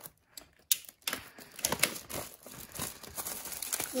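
A cardboard trading-card box being opened by hand: a sharp snap about three-quarters of a second in, then irregular crackling and rustling as the lid is worked open and the foil-wrapped packs inside are handled.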